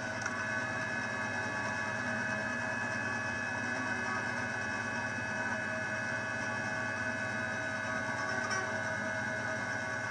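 Steady electrical hum with a few faint high steady tones underneath: background noise from a home GarageBand recording setup, the kind of feedback the uploader apologises for.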